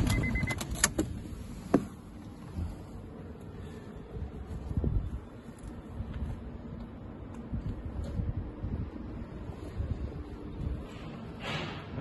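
Handling noise from a handheld camera moving about a parked car's interior: uneven low rumbling and scattered clicks and knocks. A short beep comes near the start, and a sharp click about two seconds in.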